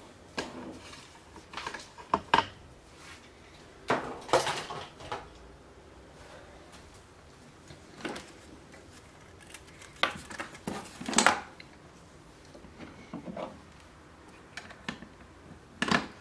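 Scattered clicks, knocks and clatters of a plastic radio housing, its circuit board and metal hand tools being handled and set down on a wooden workbench, the loudest about eleven seconds in.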